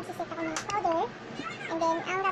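High-pitched children's voices talking and calling in short phrases.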